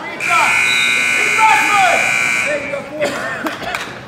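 Gym scoreboard buzzer of a wrestling match timer sounding one steady tone for about two and a half seconds, cutting off just past the middle, with shouting voices over it.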